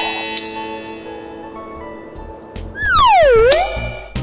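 Cartoon magic sound effects with music: a sparkling chime chord rings and fades, then about three seconds in a loud whistle-like swoop falls in pitch and rises again.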